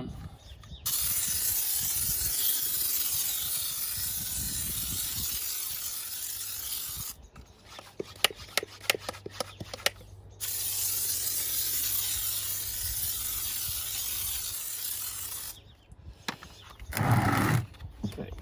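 IK hand-pump foam sprayer hissing as it sprays wheel shampoo foam onto a car wheel and tyre, in two long bursts of several seconds each. Between the bursts come scattered clicks and knocks, and near the end a brief louder noise.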